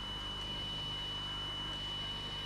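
Steady low hum with a thin, steady high-pitched whine and a light hiss over it, unchanging throughout.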